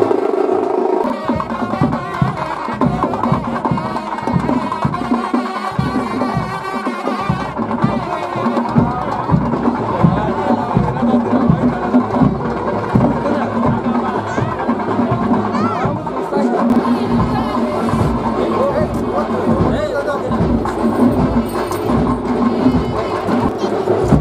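Music driven by repeated drum strokes, with a wavering melodic line, over crowd chatter.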